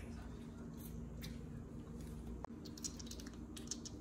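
Quiet room tone with a low steady hum, a single faint click about halfway through, and faint light crackling near the end.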